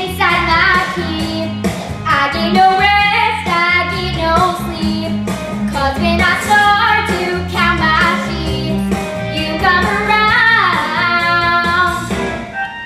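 A young girl singing a song into a handheld microphone over an instrumental accompaniment, with a steady low chordal backing under her melody.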